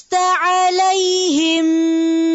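A high voice chanting Quranic Arabic in melodic tajweed recitation. Its pitch dips twice, then it holds one long steady note on an elongated syllable.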